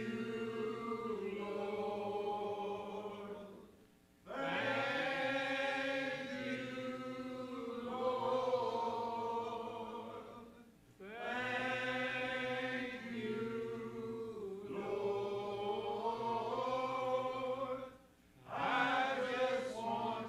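Voices singing a slow church hymn in long held phrases, with short breaks between phrases about every seven seconds.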